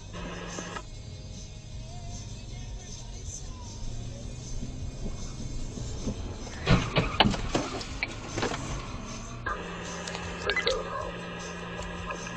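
Car-cabin sound under faint dispatch-radio voices, with a burst of sharp knocks and thuds about seven seconds in, the loudest moment.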